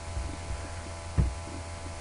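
Steady low electrical hum picked up by the recording microphone, with one dull low thump a little past a second in.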